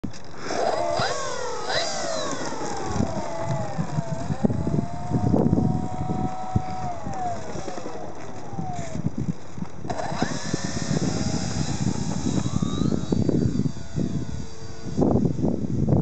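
Electric motor and propeller of a small radio-controlled P-51 Mustang model whining, its pitch rising and falling with the throttle, then climbing about ten seconds in and again near thirteen seconds as it takes off, over low wind rumble on the microphone.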